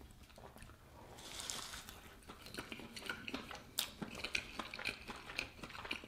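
A person chewing a soft steamed bun close to the microphone: faint, scattered small mouth clicks, with a brief soft hiss about a second in.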